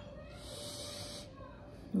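A woman breathing out through her mouth behind her hand: about a second of breathy hiss, a sigh mid-sentence.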